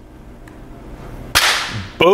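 Intro transition sound effect: a rising whoosh that swells for over a second, then a sudden sharp hit that fades out over about half a second.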